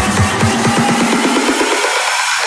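Electronic dance music with a steady beat; about half a second in the kick drum and bass fade out in a rising filter sweep, leaving only the higher layers.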